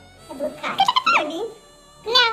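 A puppy giving a few short, high-pitched cries that rise in pitch, from just after the start to about a second and a half in.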